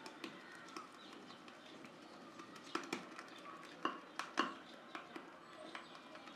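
Faint, scattered clicks and taps of a shaving brush working cream in a small lathering bowl.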